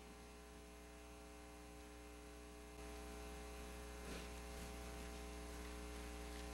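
Steady electrical mains hum from the church sound system, a low buzz with many even overtones, stepping up slightly in loudness about three seconds in. A faint knock about four seconds in.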